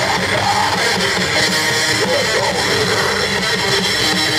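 Live metal band playing at full volume, with distorted electric guitars over bass and drums in a loud, dense, unbroken wall of sound.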